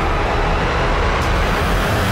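Loud, steady rumbling whoosh with a strong low end, a vehicle-like sound effect in the intro soundtrack, with a short high swish about a second in.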